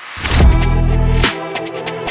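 Drill instrumental beat: after a brief drop-out the beat comes back in about a quarter second in, with a heavy, long 808 bass note under rapid hi-hats and a sampled melody.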